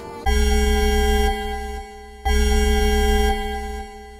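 A loud held organ chord played twice, each about two seconds long, the second starting about two seconds in: an edited-in dramatic sound-effect sting.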